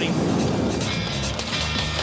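A brief rush of water splashing from a hooked tuna at the boat's side, then background music with low sustained notes.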